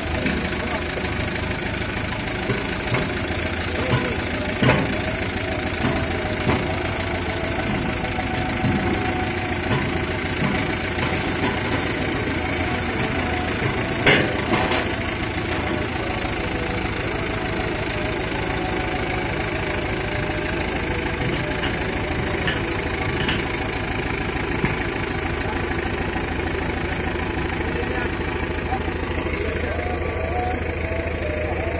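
Compact farm tractor's engine running steadily while it is driven up ramps onto a truck bed, with a few short knocks and one sharp knock about fourteen seconds in.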